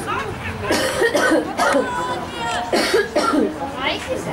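Voices of people near the microphone talking, with several short, loud bursts of sound among them.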